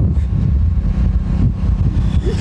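Wind buffeting the microphone on a moving motorcycle, over a steady low rumble of the engine and road.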